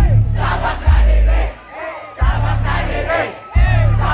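Live concert music through a loud PA, a heavy bass beat with a crowd shouting and singing along. The bass cuts out briefly twice, about one and a half seconds in and again near the end.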